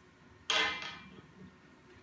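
A plastic toy button striking the glass tabletop with a sharp click about half a second in, ringing briefly as it fades, then faint handling of the buttons as they are threaded onto a cord.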